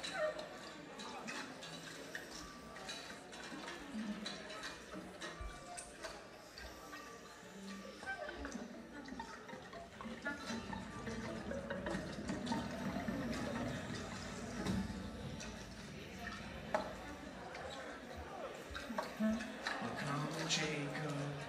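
Live concert sound: instruments playing softly under the murmur of audience voices, swelling in the low end a little past the middle.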